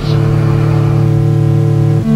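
A low, dark synthesizer chord held steady for about two seconds, a new chord striking at the start and changing again at the end.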